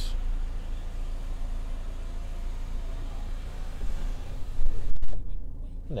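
Electric panoramic glass sunroof of a Mercedes-Benz C-Class closing: a steady motor run with a faint whine, ending in a thump about five seconds in as the glass seals shut, with a low hum underneath throughout.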